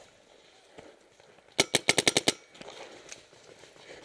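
A paintball marker, a Planet Eclipse Ego09, firing a rapid burst of about eight shots in well under a second, about a second and a half in.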